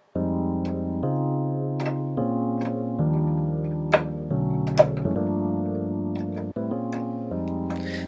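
Sampled Rhodes electric piano playing a series of lush sustained chords, each one triggered by a single key through a Chordworx sampler patch. The chord changes every second or so.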